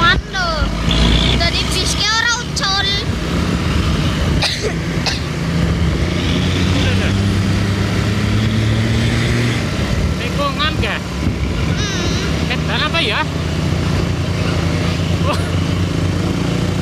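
A vehicle driving at speed, with a steady engine drone and road noise. Short voices break in a few times.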